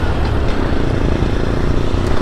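TVS Stryker 125cc's single-cylinder engine running steadily while riding at road speed, with wind rushing over the mounted camera's microphone.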